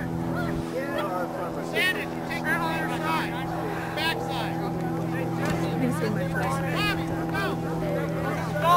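A steady motor-like hum runs throughout, with distant shouting voices of players and spectators calling out over it at intervals.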